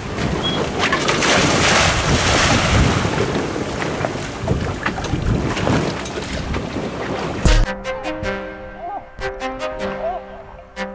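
A boat under way on choppy sea: a steady rush of wind buffeting the microphone and water along the hull. About three-quarters of the way in it cuts off with a thump, and background music with held notes takes over.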